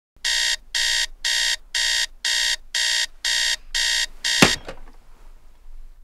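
Digital alarm clock beeping, about two high-pitched beeps a second, nine in all. It stops abruptly with a sharp knock as it is shut off about four and a half seconds in.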